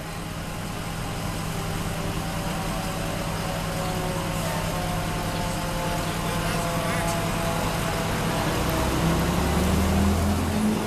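Fire engine's diesel approaching and growing steadily louder, its heavy low engine sound strongest near the end as it turns into the street, over a steady engine idle.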